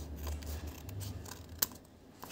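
Scissors cutting through several layers of folded, glued paper, with one sharp click about one and a half seconds in.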